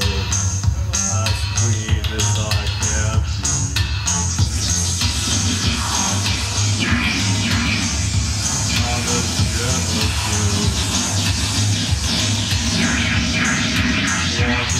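Live electronic music played on a backlit pad controller, with a steady low bass and a clicking beat. About five seconds in, the beat gives way to a denser, noisy texture.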